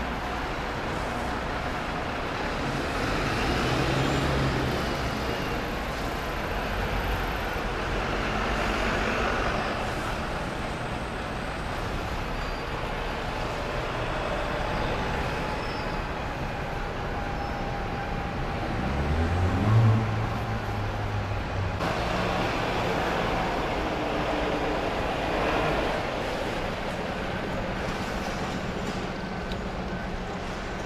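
Diesel buses pulling away and passing at a busy city bus stop over steady traffic noise. A bus engine note rises sharply about two-thirds of the way through, the loudest moment.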